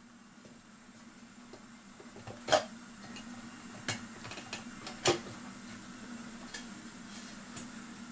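Clicks and taps of a Master Crafters clock's metal back plate being worked loose and popped off by hand, with three sharper clicks about two and a half, four and five seconds in, over a steady low hum.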